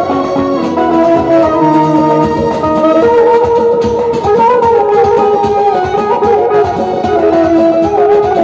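Live Azerbaijani wedding-band music led by a synthesizer keyboard, playing a sustained, ornamented melody with pitch bends over a steady beat of drum strokes.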